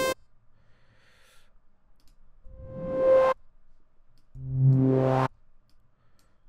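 Serum synth riser patch auditioned twice: about two and a half seconds in, a short white-noise swell with a resonant filter tone rises and cuts off; near the end, a low buzzy saw-wave note with noise rising over it plays for about a second and stops abruptly.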